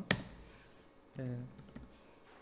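Computer keyboard keystrokes as code is typed: one sharp key press just after the start, followed by a few lighter taps.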